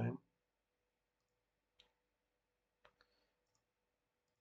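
A few faint computer mouse clicks against near silence: one about two seconds in, a quick pair about a second later and a last tiny one.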